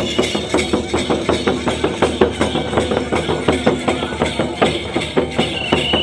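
Drums for a Santal dance: a large drum and a steel-shelled drum beaten with sticks in a fast, steady rhythm of several strokes a second. A high steady tone joins near the end.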